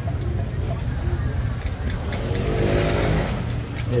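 Street traffic: a steady low rumble of road noise, with a vehicle engine passing close by, swelling to its loudest about three seconds in and then fading.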